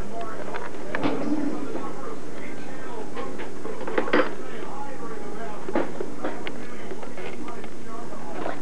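Indistinct voices talking in the background, with a few sharp knocks or clinks, the loudest about four seconds in.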